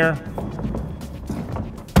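Background music, then near the end a single sharp knock as a wooden wall panel is pushed shut.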